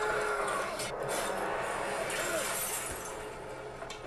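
Quiet battle soundtrack of a television episode: a steady rushing haze with a few faint clinks and knocks.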